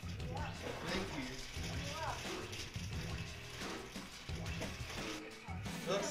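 Background music playing, with voices in the room over it.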